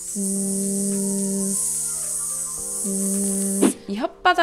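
A woman holding a long, steady voiced 'zzz' sound, a sibilant hiss with her voice buzzing under it, as a drill for the English z that Korean speakers lack. It breaks off shortly before the end, over soft background music.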